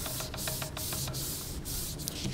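Hands rubbing along a sheet of folded construction paper, pressing the fold into a crease, with a run of light, quick ticks through most of it.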